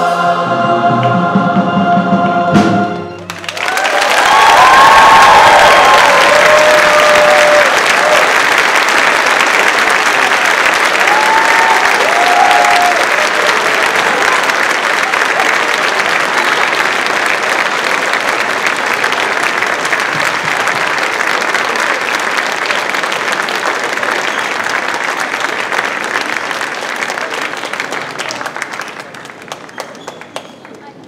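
A combined school choir and string orchestra hold a final chord that cuts off about three seconds in. An audience then applauds loudly, with a few cheering voices, and the clapping thins out near the end.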